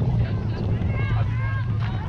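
Steady low wind rumble on the microphone, with distant high voices calling out from about halfway through.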